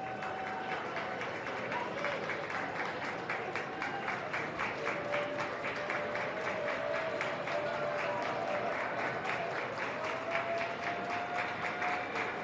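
An audience applauding: dense, steady clapping that swells a little about a second in and carries on.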